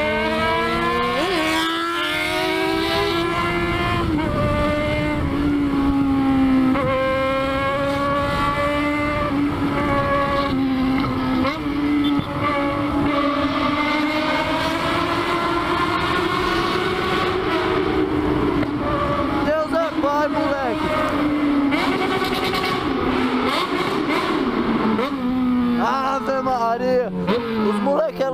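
Yamaha XJ6's inline-four with a 4-into-1 straight-pipe exhaust, heard from the rider's seat, revving hard through the gears: the pitch climbs and drops back at several upshifts in the first ten seconds. It then holds high revs at speed, partly inside a tunnel, and falls in pitch near the end as the bike slows down.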